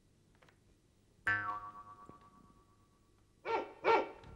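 Comic sound effects, likely from a stage keyboard: a single ringing 'boing'-like tone a little over a second in that falls away over about two seconds, then two short yelping sounds near the end.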